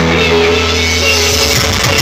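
Loud music played over a sound system, with a sustained heavy bass line. About a second and a half in, the bass breaks into a choppier, busier pattern.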